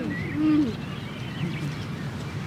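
Bird calls: a low cooing note about half a second in, with faint higher chirps over a steady outdoor background.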